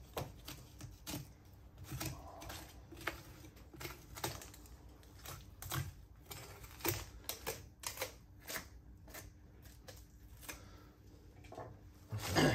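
Boning knife cutting and seaming through a beef hindquarter on a wooden block: faint, irregular clicks and taps, a few a second, as the blade works through the meat.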